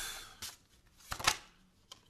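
Tarot cards being handled and shuffled by hand: a short papery rustle at the start, then a louder crisp flurry of card snaps a little over a second in.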